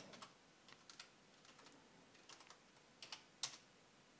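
Faint computer keyboard keystrokes and clicks, sparse and irregular, with a couple of slightly louder clicks past the three-second mark.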